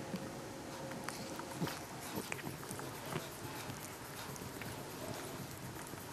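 Scottish Fold cat grooming itself close up, licking its paw: irregular small clicks and ticks.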